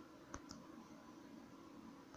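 Near silence with a faint steady hum, broken by two faint clicks about a third of a second in, roughly a sixth of a second apart.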